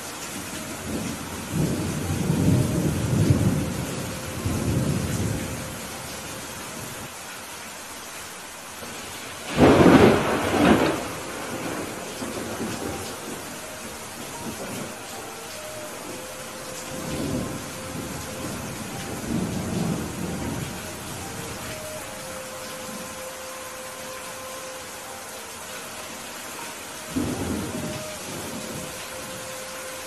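Heavy rain falling steadily through a thunderstorm, with rolling thunder: a long rumble in the first few seconds, the loudest and sharpest thunderclap about ten seconds in, and several lighter rumbles later.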